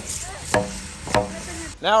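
Two sharp blows on a wooden beam, about half a second apart, each with a brief ring, typical of a hammer striking wood.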